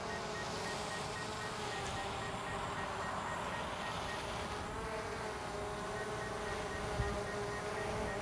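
DJI Mavic Air 2 quadcopter hovering: a steady, high buzzing whine from its four propellers, the pitch wavering slightly about halfway through as it holds its position.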